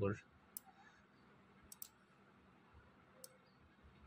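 Computer mouse clicking: four short sharp clicks, two of them in quick succession near the middle, over quiet room tone.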